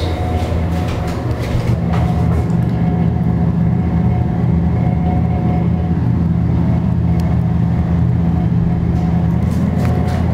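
Steady low hum inside a MontgomeryKONE hydraulic elevator cab during the ride, with a few faint clicks.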